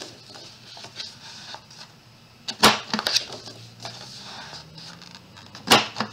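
Punch head of a We R Memory Keepers 1-2-3 Punch Board snapping down twice, about three seconds apart, as its corner rounder rounds off the corners of a sheet of paper. Paper is handled and turned between the two punches.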